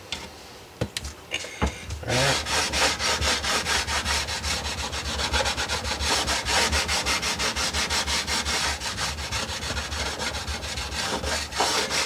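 Sandpaper on a radius block rubbing along a rosewood guitar fingerboard in rapid, even back-and-forth strokes, truing the board to its radius after the frets have been pulled. The sanding starts about two seconds in, after a couple of light knocks.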